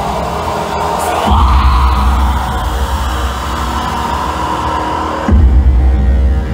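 Loud live experimental music: a heavy, distorted low drone under a held, harsh midrange wail. The low drone drops out at the start, comes back about a second in, cuts out again briefly about five seconds in, and returns louder.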